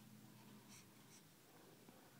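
Near silence: quiet room tone with a faint low hum and two brief soft hisses near the middle.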